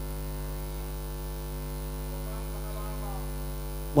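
Steady electrical mains hum, a low buzz with many even overtones, carried through the microphone and sound system.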